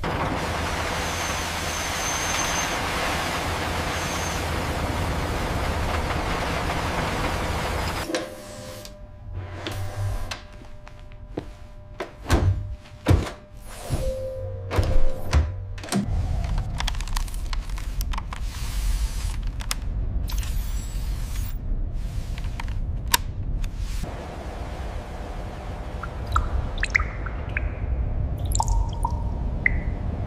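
Drilling rig sound effect: a steady hiss over a low rumble for about eight seconds as the auger bores into rock. Then a run of sharp mechanical clicks and knocks, followed by a low rumble with scattered clicks and a few faint high chirps near the end.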